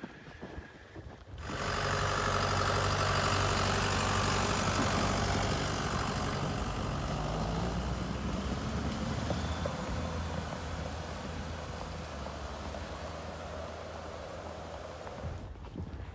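A snow groomer passing close by, its engine running steadily as it pulls a trail-grooming drag over the snow. It comes in suddenly about a second and a half in, is loudest over the next few seconds, then slowly fades as it moves off.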